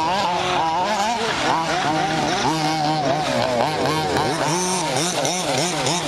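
Several 1/5th-scale two-stroke petrol RC car engines revving up and down over and over as the cars race, their pitches rising and falling roughly every half second and overlapping.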